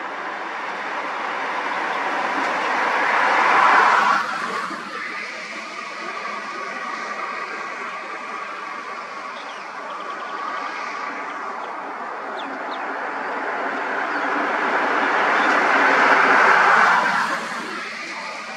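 Road traffic passing close by: a car, then a van, each with tyre and engine noise swelling for several seconds and dropping off suddenly as it goes past, about four seconds in and again near the end.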